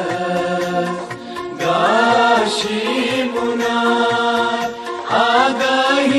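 Sung college anthem: a voice holds long notes and slides up into new ones about one and a half and five seconds in, over a regular low beat.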